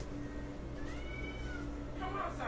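A cat meows once, a short call that rises and then falls in pitch.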